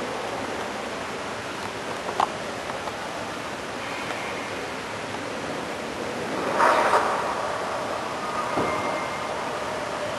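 Steady hiss of a large hall's background noise, with a sharp click about two seconds in and a short, louder rustle just before the seven-second mark.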